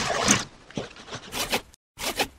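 Marker pen drawing on a surface in about three short strokes, the first the loudest, starting suddenly out of silence.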